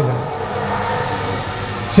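A steady low hum fills a brief pause in a man's speech, with his voice trailing off at the start and resuming at the end.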